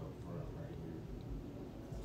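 Faint, steady room noise with no distinct event.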